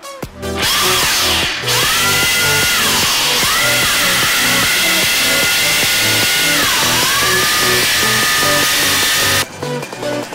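Sinbo countertop blender motor running hard with a loud grinding noise as it chews up plastic disposable lighters. Its whine dips in pitch and recovers twice, about three and seven seconds in, as the load drags on the motor, and the noise stops abruptly shortly before the end. Electronic music with a steady beat plays underneath.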